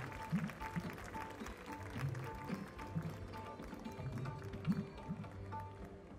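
Background instrumental music with a steady beat: a short high note repeats about twice a second over low drum strokes.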